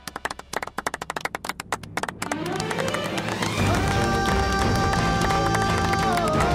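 A few people clapping for about two seconds, then background music rises in a sweep and settles into a held, sustained dramatic chord.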